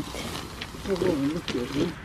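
A person's low, muffled voice, starting about a second in, quieter than the talk around it.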